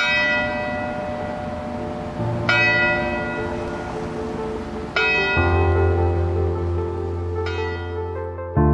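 Background music opening with a bell-like chime struck every two and a half seconds, ringing on over low sustained chords that change as it builds.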